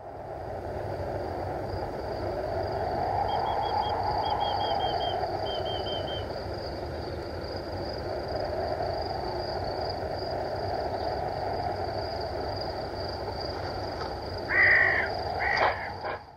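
A steady rushing outdoor-ambience bed with three quick runs of faint, short bird chirps a few seconds in, then two loud bird calls near the end.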